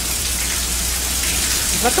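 Steady rain falling on a wet paved yard and an overhead canopy roof, an even, unbroken hiss.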